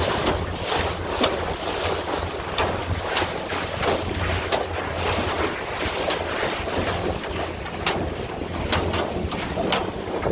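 Outboard motor running steadily as the boat travels at speed, a low hum under heavy wind buffeting on the microphone and rushing water from the wake and hull.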